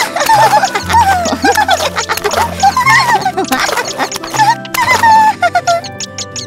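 Squeaky, quickly gliding chirps and squeals from cartoon bird characters over bouncy background music.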